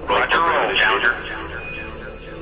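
Speech only: a narrow-band, radio-like voice of space-launch commentary, loudest in the first second, over a faint steady high tone.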